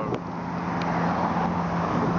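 A Lamborghini Aventador Pirelli Edition's V12 running at low revs as the car moves slowly through an intersection, a steady low engine note over street traffic.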